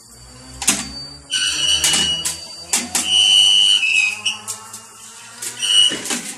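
A thin aluminium number plate clattering and knocking as it is handled at a plate hot-stamping machine, with a few sharp clicks and several high, steady whistle-like tones of about a second each.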